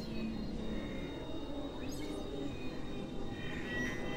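Experimental electronic synthesizer drone and noise music: a dense, grainy low texture with a thin steady high tone entering under a second in, a brief rising sweep about halfway through, and another held high tone coming in near the end.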